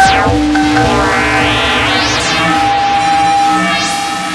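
DIY kalimba plucked and fed through a Eurorack modular synthesizer, its notes held out as electronic tones. A sharp plucked note opens, then held pitches follow, and sweeps rise and fall in pitch about halfway through and again near the end.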